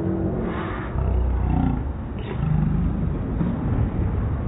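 Bowling alley din: the low rumble of bowling balls rolling down the wooden lanes, swelling about a second in and again later, with a faint sharp knock a little after two seconds.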